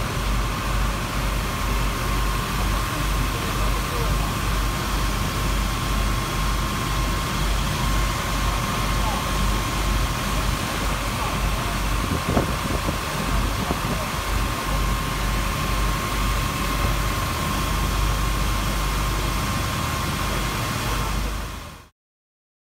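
Fire engines' engines and pumps running hard to drive their water monitors, with the spray of the jets hissing over it, an uneven low rumble and a steady high whine throughout. The sound cuts off abruptly just before the end.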